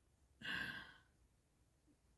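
A woman sighing once: a short breathy out-breath lasting about half a second.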